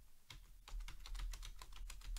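Computer keyboard typing: a quick run of crisp keystrokes, number keys and Enter, as a list of numbers is typed in line by line, starting about a third of a second in.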